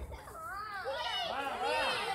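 Several high-pitched children's voices talking and calling over one another, loudest near the end.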